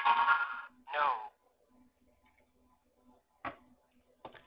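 The Lego Mindstorms EV3 brick's speaker playing its recorded voice sound saying "No", the output of the switch block's false case, preceded by a short steady-toned sound at the start.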